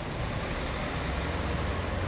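Steady ambient background noise: an even low rumble with hiss throughout, of the kind left by distant traffic.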